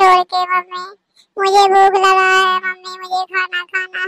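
A cartoon boy's high-pitched voice crying out in long drawn-out wailing stretches, broken by a short pause about a second in.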